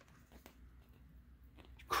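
Faint rustling and a few light ticks of a glossy paper booklet's pages being turned by hand.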